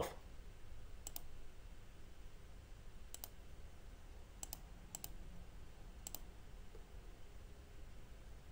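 Faint computer mouse clicks: five short clicks spaced a second or two apart, over a low steady room hum.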